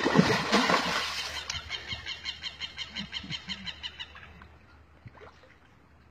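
Shallow lake water splashing at the bank as it is slapped by hand to call fish. A loud burst of splashing comes first, then a quick run of light slaps, about four a second, that fades away over about four seconds.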